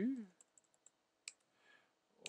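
Faint key clicks of typing on a computer keyboard: a quick run of taps, then a couple more spaced out.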